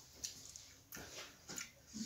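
Close-up eating sounds of a man eating rice and curry by hand from a steel plate: chewing and wet lip smacks, with about four short clicks and smacks spread across the two seconds.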